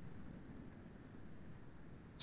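Faint, steady low hum and hiss of an open microphone's background noise on an online call, with no distinct events.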